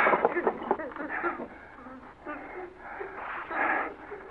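A woman's faint, wordless moaning and sobbing in the thin, narrow sound of a 1946 radio drama recording, coming in short scattered bursts.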